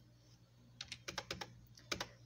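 Computer keyboard being typed on: a quick, light run of key clicks starting about a second in, entering a number.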